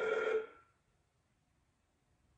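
A sustained electronic tone, several notes held together, fades out within the first half second. Then there is dead silence.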